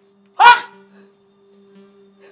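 A single short, loud shouted exclamation about half a second in, over a steady low drone of background music.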